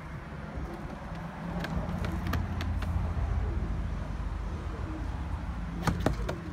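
Low steady engine rumble of a nearby motor vehicle, growing louder about a second in, with a few faint clicks over it.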